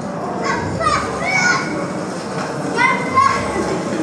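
Children's voices shouting and calling out in high-pitched bursts, about half a second in and again around three seconds, over a steady background hiss. It is heard as a film soundtrack playing back in a room.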